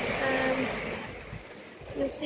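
Small waves washing onto a beach, a steady rushing noise that dips in the second half, with a short held voice sound in the first half-second.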